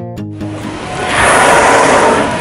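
Killer whale breathing out through its blowhole: a loud rush of air that starts about half a second in and swells louder.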